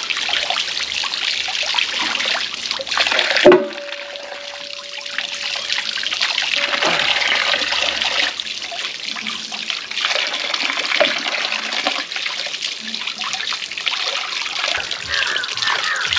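Water from a tap running and splashing into a metal bowl of raw beef pieces as they are rinsed and turned over by hand. About three and a half seconds in there is a sharp knock, followed by a ringing tone that lasts a few seconds.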